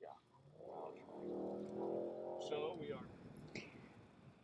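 Faint, muffled voices talking quietly, too low to make out words.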